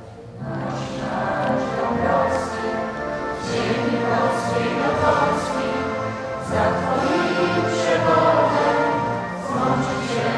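A choir of many voices singing a solemn song together, dipping briefly at the very start and then carrying on steadily.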